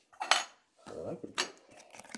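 Hard clear plastic trading-card cases clicking and tapping as cards are handled: two sharp clicks about a second apart.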